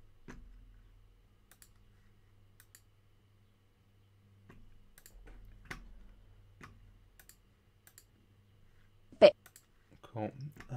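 Scattered single clicks from a computer mouse and keyboard at a desk, a dozen or so spread irregularly, with one much louder sharp click about nine seconds in. A faint low hum sits underneath.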